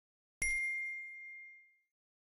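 Notification-bell 'ding' sound effect of a subscribe-button animation: one clear, high chime about half a second in, ringing out and fading over just over a second.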